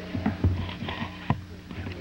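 A few sharp knocks and thumps as objects are handled and set down at a desk, the loudest about half a second in and another near the middle, over a steady low electrical hum and faint voices.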